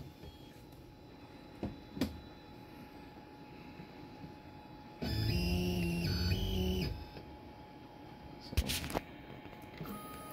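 Onefinity CNC's stepper motors whining steadily for about two seconds in the middle as the gantry jogs at slow speed toward the probe block, with a short break partway through. A few light clicks before and after, from the jog controller's buttons.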